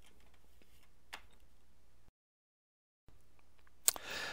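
Faint metallic clicks of wrenches working the crankshaft pulley bolts, one a little louder about a second in. The sound drops to dead silence for about a second past the middle, and a sharp click comes just before the end.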